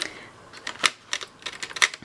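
Wooden colour pencils (Tombow Irojiten) clicking against one another and their cardboard tray as they are pushed back into place by hand: about eight light, sharp clicks over two seconds.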